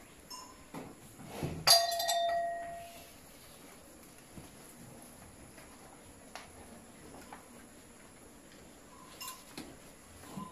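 A single sharp metallic clang about two seconds in, ringing on with a clear tone that dies away over about a second, followed near the end by a few faint knocks.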